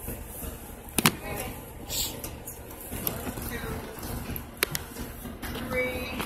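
Inside a city bus: a steady low rumble of the bus runs throughout, with a sharp knock about a second in, a short hiss about two seconds in and a second click near five seconds, under faint passenger voices.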